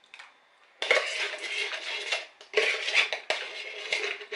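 Metal spoon scraping the inside of a metal tin of dulce de leche, in three scratchy bursts starting about a second in, with a few clicks of spoon on tin.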